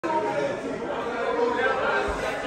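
Indistinct voices talking over one another in a large, echoing room; no words come through clearly.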